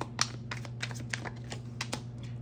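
Tarot cards being handled and shuffled by hand over a wooden desk: a string of light, irregular clicks and taps as the cards knock together and are laid down, over a steady low hum.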